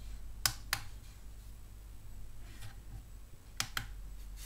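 Small plastic control buttons on an Andonstar AD407 digital microscope clicking as they are pressed: two quick clicks about half a second in and two more near the end, switching the microscope into playback mode.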